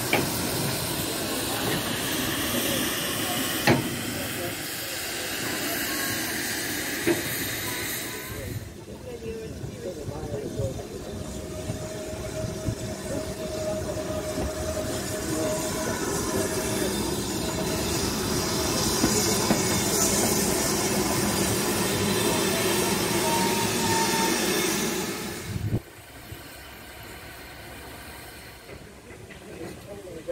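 BR Standard Class 4 tank steam locomotive at close range, with a loud hiss of escaping steam for the first eight seconds or so. After that the sound cuts to a quieter, more distant mix.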